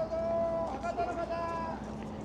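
A high voice holding one long, steady note, broken once briefly near the middle.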